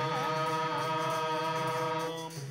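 Hindu devotional chanting during aarti: one long steady sung note, held level with no break, over a steady low accompaniment.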